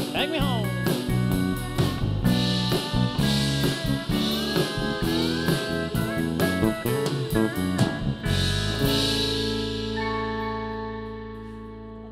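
Country band of acoustic guitar, electric bass and pedal steel guitar playing the instrumental close of a song. About eight seconds in they land on a final chord that is held and rings out, fading.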